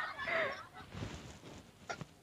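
A man's laugh trailing off in the first half second, then a quiet stretch with a single faint click near the end.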